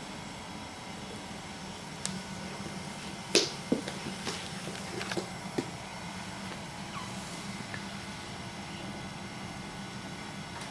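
A baby's hands slapping and patting a hardwood floor while crawling: a handful of light, sharp slaps from about two to six seconds in, over a steady low background hum.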